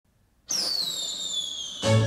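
The opening of a K-pop song played back through Bowers & Wilkins 705 S3 bookshelf speakers and picked up by a room microphone. After a brief silence a whistle-like tone slides slowly downward, and near the end the beat and bass come in.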